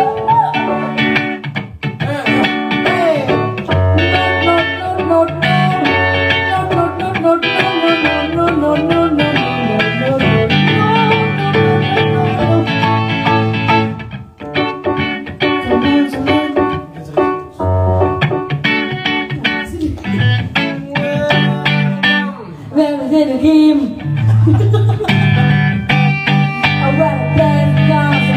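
Live band accompaniment: guitar and keyboard playing a song over sustained low bass notes, with a woman's voice singing into a microphone at times.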